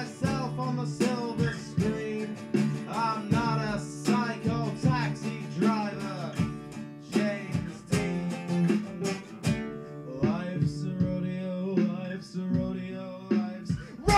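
An acoustic guitar strummed together with a second guitar in an instrumental passage of a rock song. Over it runs a melody line that slides up and down in pitch, busiest in the first half.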